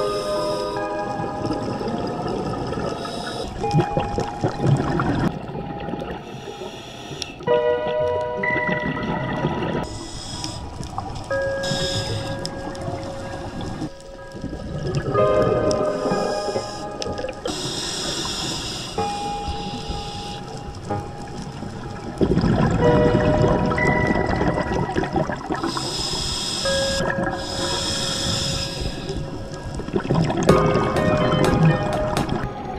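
Background music with held, slow-changing notes laid over underwater sound: the bubbling rush of a scuba diver's regulator exhalations, with brighter bursts of bubbles lasting about two seconds a couple of times.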